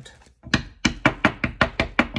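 A hand knocking on a deck of tarot cards on a wooden table: a quick run of about ten sharp taps, starting about half a second in.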